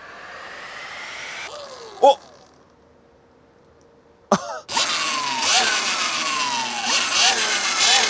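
Electric dirt bike's motor and chain drive spinning the raised rear wheel on an EBMX X9000 controller: a whine rises as the throttle is opened, then drops to a lull. From about halfway on, repeated throttle blips make the whine jump up and fall away several times, over loud chain and knobby-tyre noise, with excited shouts at about two and four seconds in.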